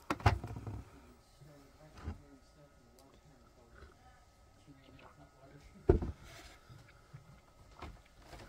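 Three dull knocks from handling close to the microphone: one just after the start, one about two seconds in and the loudest about six seconds in. Faint voices run quietly underneath.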